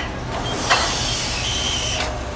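Hydraulic jacking system building pressure: a steady low hum from the pump unit, joined under a second in by a hiss of fluid through the valves that holds to the end, with a faint steady high tone in it.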